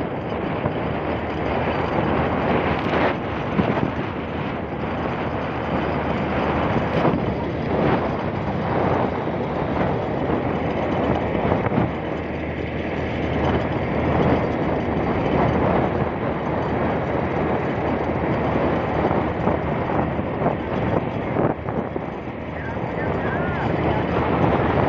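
Wind rushing over the microphone of a moving motorcycle, with the motorcycle's running noise underneath, steady through the ride.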